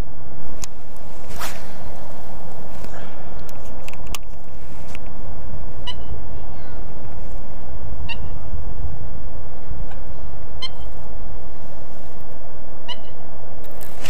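Wind buffeting the microphone in a steady low rumble, with a few short, sharp high clicks or chirps over it, several spaced about two seconds apart.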